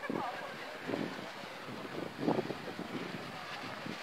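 Wind noise on the microphone, coming in uneven gusts, with faint voices of people around.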